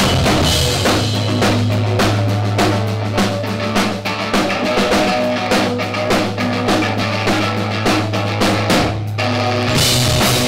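Live rock band playing an instrumental passage: drum kit hitting steadily over a held low bass note, with electric guitars underneath. About nine seconds in the music briefly drops out, then the full band crashes back in louder, with bright cymbals.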